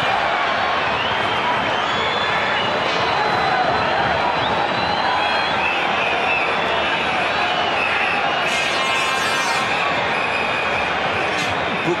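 Football stadium crowd: a steady din of many voices with scattered wavering whistles over it.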